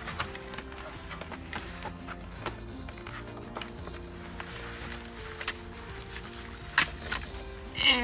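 Soft background music of held notes that change every second or so, with a few sharp clicks over it, the loudest near the end.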